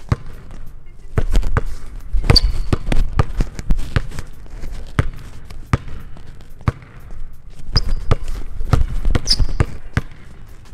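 A basketball dribbled fast and hard on a hardwood gym floor: an irregular run of sharp bounces through a between-the-legs dribble combo at full speed. There are a few short, high sneaker squeaks on the court, about two seconds in and near the end.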